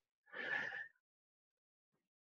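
A person's short, faint intake of breath, lasting about half a second, with a slight whistling tone through it.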